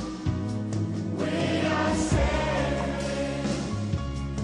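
Choir singing a slow ballad over instrumental backing, in held chords that change about a second in.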